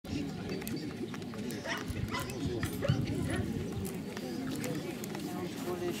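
A dog barking a few times over the overlapping chatter of people.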